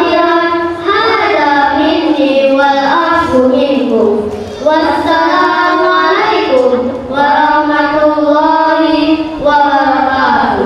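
Boys' voices singing together into hand microphones over a PA system, in long held, wavering notes grouped in phrases of two to three seconds.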